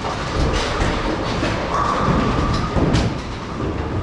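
Bowling alley din: a continuous rumble of balls rolling on wooden lanes, with several sharp knocks, the loudest about three seconds in, and a brief whine around two seconds in.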